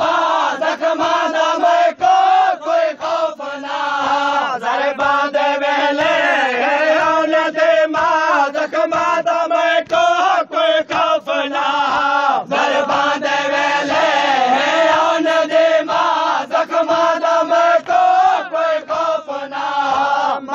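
Male voices chanting a Saraiki noha, a Shia mourning lament. The melodic lines are held and break off briefly between phrases.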